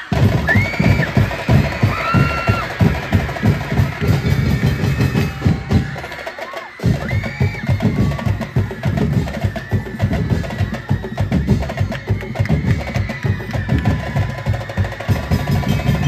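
Fast, loud percussion music of drums and wooden knocks driving a street dance, with a short break about six and a half seconds in before the beat picks up again.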